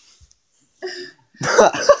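Laughter breaking out in breathy, cough-like bursts about one and a half seconds in, after a short vocal sound a little before.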